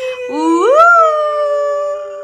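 A woman's voice glides sharply upward into one long held sung note, loud and playful.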